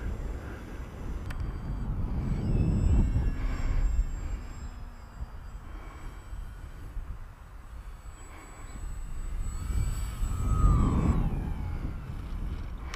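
Electric brushless motor of a small RC model plane (Bush Mule) whining in flight, its pitch bending up and down as it passes and falling near the end as it throttles down to land. Low wind rumble on the microphone swells under it.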